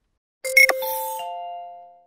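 Closing station sound logo: a short sharp hit, then three chime notes entering one after another, a lower note first and two higher ones about a third and two thirds of a second later, ringing together and fading out.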